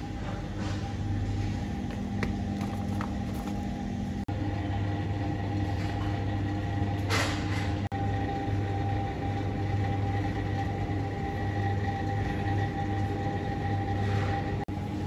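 Steady machine hum of supermarket refrigerated display cases, with faint steady tones over a low drone. A short hiss about seven seconds in, and the sound drops out for an instant twice.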